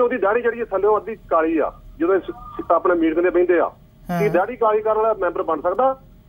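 Speech only: a caller talking over a telephone line, the voice cut off above about 4 kHz. About four seconds in there is a short, fuller-sounding interjection.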